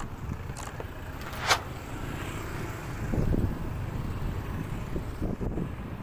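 Yamaha NMAX scooter riding slowly: a steady low engine and road rumble with wind on the microphone, and one sharp click about a second and a half in.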